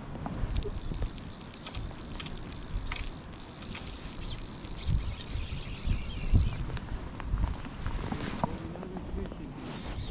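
Fly reel clicking steadily as line is wound in on a hooked trout; the clicking stops about two-thirds of the way through. Low rumble and knocks from wind and handling on the head-mounted microphone run underneath.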